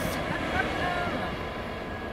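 A Freightliner Class 66 diesel locomotive and its freight train passing and moving away, a steady rumble that slowly fades.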